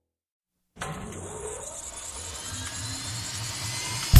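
After a short silence, a steady engine-like rumble with a hissy top starts abruptly and grows slightly louder.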